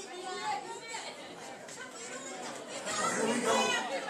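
Audience chatter: several people talking at once, growing louder near the end.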